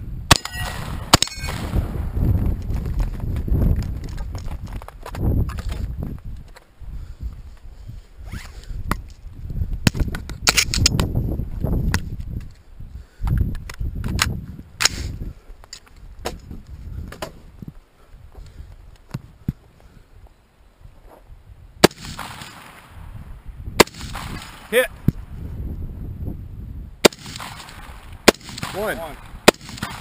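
Close gunfire from a shotgun and then a scoped rifle. A few sharp shots come in the first seconds, followed by rumbling handling and movement noise. In the second half, single rifle shots crack every one to three seconds.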